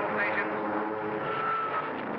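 Steady drone of a propeller aircraft's engine, with indistinct voices in the first half-second.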